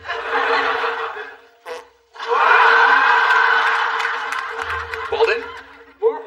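Studio audience laughing in two waves: a short one at the start, then a louder, longer one from about two seconds in.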